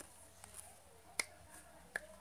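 Finger snaps: a faint click, then two sharp snaps about three-quarters of a second apart, with little else between them.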